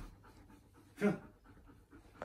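Dog panting softly.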